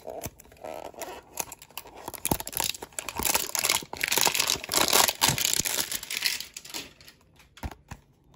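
Hands unwrapping a Topps Update Series baseball card box: crinkling and tearing with scattered clicks, loudest from about three to six and a half seconds in.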